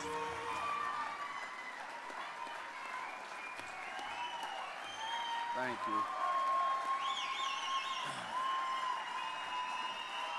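Audience applauding steadily, with cheers and high whistles rising over the clapping, as music fades out in the first moment.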